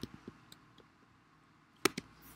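Quiet room tone with a few faint ticks early on and one sharp click near the end.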